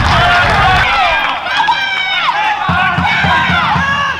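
Crowd noise at a small football ground, cut off abruptly about a second in, followed by players shouting to each other during open play, with a quick run of low thuds near the end.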